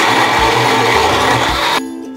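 Electric countertop blender running, blending milk with ice cubes and almonds, then switching off shortly before the end. Background music with a steady beat plays underneath.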